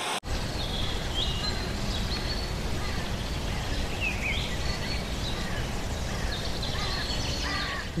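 A short burst of TV-style static cuts off a fraction of a second in. Then comes a steady outdoor rushing noise with bird calls, short chirps and whistles, heard over it throughout.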